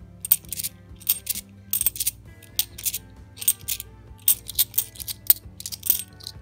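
Cupronickel 50p coins clinking against each other as they are thumbed through in the hand: an irregular run of sharp metallic clicks, several a second. Quiet music plays underneath.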